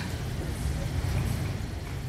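Steady low background rumble of room tone, with no distinct events.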